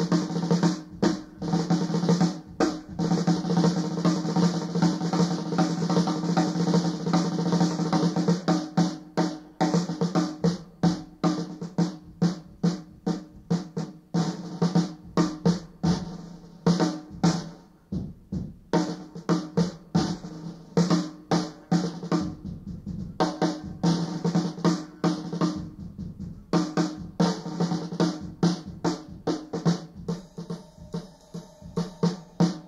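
An unaccompanied bebop drum-kit solo on a 1950s recording, with snare rolls and pitched tom strokes that play out a tune's melody on the drums. It is busy at first and sparser in the middle.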